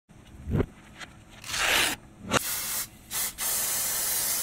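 Aerosol spray-paint can hissing in four bursts, the last one long. A low thump comes early and a sharp click just before the second burst.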